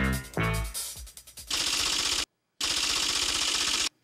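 A short musical sting, then a fast rattling burst of very rapid clicks in two stretches of about a second each, split by a brief silent gap, that cuts off abruptly just before the end.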